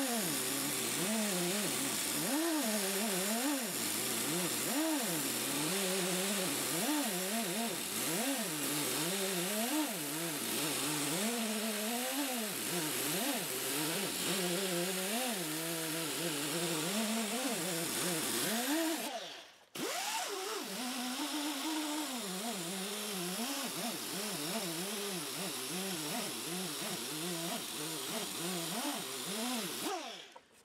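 Motor-driven cloth buffing wheel running against the fret ends and edge of a bass guitar fingerboard, its pitch wavering up and down over a steady hiss. The sound is sped up four times and cuts out briefly about two-thirds of the way through.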